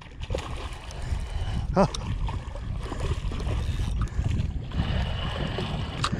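Hooked tilapia splashing and thrashing at the pond surface as it is played in close to the bank, over an uneven low rumble.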